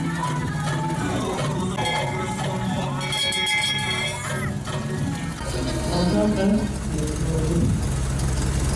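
Brass bell on a vintage fire truck, rung by a pull cord, clanging with a bright ringing tone around the middle, over music and voices.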